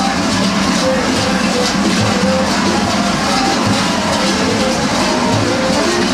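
Many large kukeri bells clanging together in a dense, continuous jangle as the costumed dancers move.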